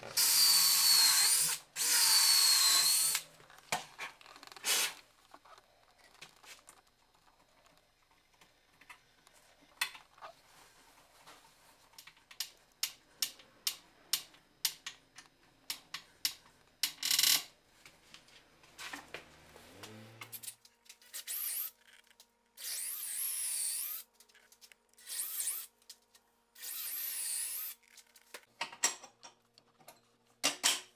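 Power drill running in short bursts of one to two seconds, its whine wavering as it loads: two runs at the start and four more in the last third. Light clicks and taps of hand work on metal hardware between the runs.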